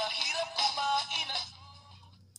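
A song with vocals playing back from a cassette tape through the Sony TCM-30 cassette recorder's small built-in speaker, thin with almost no bass. The music stops about one and a half seconds in.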